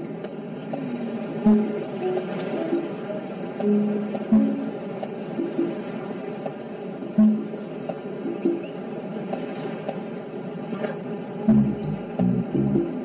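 Background film-score music: low held notes with a short accented hit about every three seconds.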